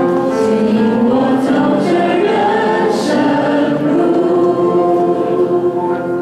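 A small worship team of men's and women's voices sings the closing line of a praise song over microphones, ending on one long held note.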